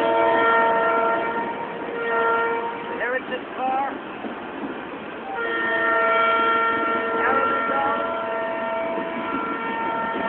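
Train horn sounding a steady multi-note chord in long blasts: one in the first two seconds, another from about halfway to near the end, and a short one at the end. Underneath runs the steady rolling rumble of passenger cars passing on the rails.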